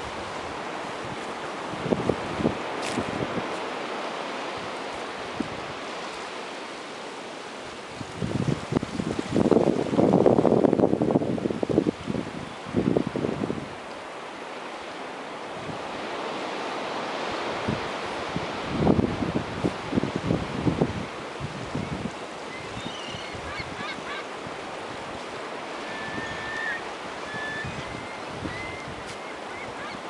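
Surf washing on a sandy beach, with wind on the microphone; louder irregular bursts come around ten seconds in and again near twenty seconds. A few faint, short bird calls sound near the end.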